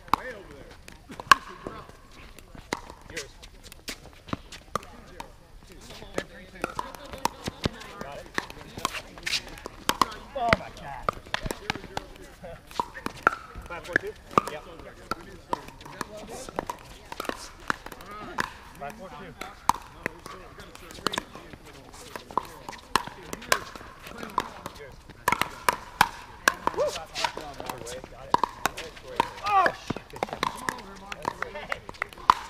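Pickleball paddles striking a hard plastic ball during doubles rallies: sharp pops at irregular intervals, some loud and close, with the ball bouncing on the court between hits.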